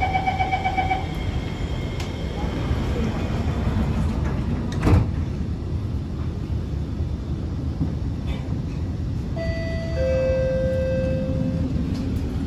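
The door-closing chime of an R151 MRT train beeps rapidly for about a second, then the sliding doors shut with a thump about five seconds in. The cabin hum runs throughout; near the end two steady tones sound, the second lower in pitch than the first.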